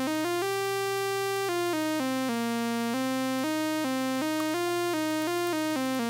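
A single-voice synthesizer plays an unbroken stream of computer-chosen notes from a pentatonic scale on B-flat (MIDI note 58). It steps to a new note about three or four times a second, and holds one note for about a second near the start.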